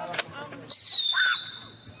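Whistling firework taking off: a sudden high whistle about two-thirds of a second in, sliding slightly down in pitch and fading away over about a second.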